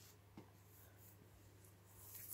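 Near silence: faint scratchy rustle of paper cutout figures being slid over a tiled floor, with one small tap about half a second in, over a low steady hum.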